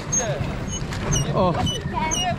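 People talking and calling out over a steady low rumble.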